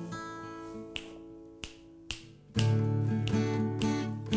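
An acoustic guitar chord rings out and fades, three sharp clicks land in the lull, and then strummed acoustic guitar chords come back in loudly and rhythmically about two and a half seconds in.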